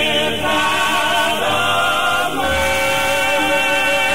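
Male gospel quartet singing held four-part harmony chords with vibrato, no clear words, the chord shifting about once a second.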